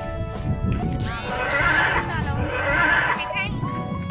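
Dinosaur sound effects from the park's model dinosaurs: shrill, animal-like screeches, one gliding in pitch about a second in and a wavering one past three seconds, over steady music.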